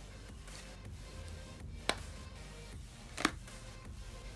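Soft background music with two sharp plastic clicks, about a second and a half apart, as small plastic ink-pad cases are handled and set down on the table; the second click is the louder.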